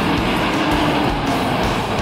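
Ford F-250 Super Duty pickup's engine working hard in four-wheel-drive low while its tyres spin and throw sand, a steady loud rush of engine and tyre noise as the truck starts to bog down in soft sand over mud.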